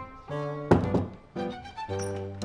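Background music of short, detached pitched notes, with one sharp thump a little under a second in that is the loudest sound here.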